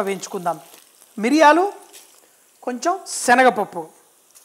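A man talking in short phrases over a faint sizzle of whole spices roasting in a steel pan.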